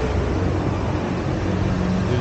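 Low, steady rumble of a vehicle engine in street traffic, with a faint steady hum in it near the end.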